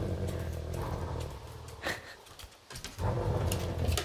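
Dog growling low in play while tugging on a toy: one growl of about a second and a half, then a second growl starting about three seconds in.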